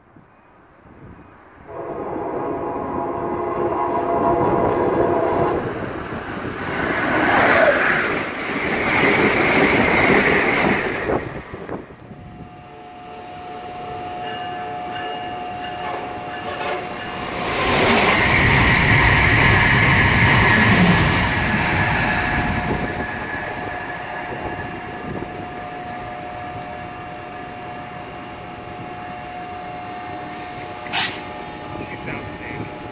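An electric train's horn sounds a chord for about four seconds, followed by the rumbling, clattering noise of a train moving on the rails that swells twice. From midway, a New Jersey Transit electric locomotive close by gives a steady electrical whine over its rumble.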